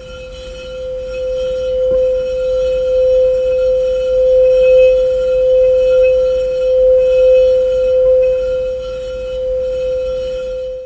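Woodstock Chimes Awakening Bell, a metal tube bar on a wooden stand, rubbed with a mallet singing-bowl style to draw out one sustained ringing tone with fainter overtones above it. The tone builds over the first couple of seconds and then swells and eases gently as the rubbing goes on.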